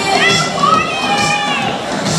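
A spectator's high-pitched whoop of encouragement: one drawn-out cheering shout of about a second and a half, rising at the start, with the swing dance music playing underneath.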